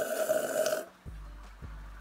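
A person slurping a sip of tea from a cup: a hissing slurp that stops a little under a second in, followed by a quiet low hum with a few faint ticks.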